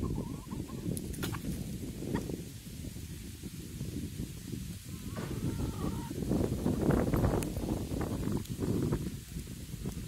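A flock of chickens clucking faintly, with a few short calls, over a low, uneven rumble on the microphone that swells for a few seconds past the middle.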